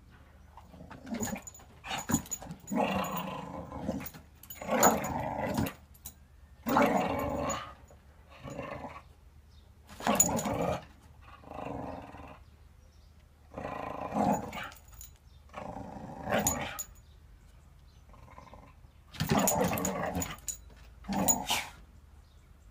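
Dog growling in short bouts every second or two while playing with a rubber Kong toy, with a few sharp knocks among the growls.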